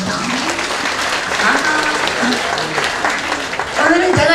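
Audience applauding steadily, with a few voices mixed in.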